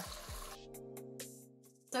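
Water poured from a plastic container into a hot pot, the pour trailing off about half a second in. Soft background music holds a steady chord after it.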